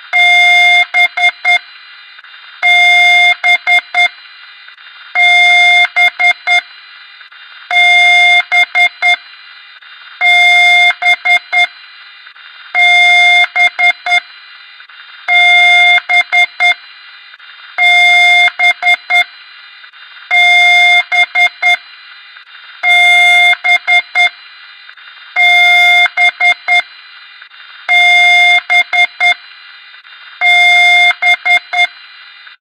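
Loud electronic beeping in a repeating pattern: a buzzy beep about a second long followed by a quick run of four or five short clicks, repeating about every two and a half seconds, twelve times over.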